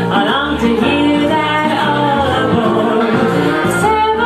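A 1940s-style female vocal trio singing in close harmony over an instrumental backing, continuous and full through the whole stretch.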